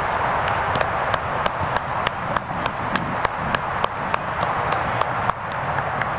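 Steady rhythmic hand clapping, about three claps a second, that stops a little before the end, over a constant background hiss.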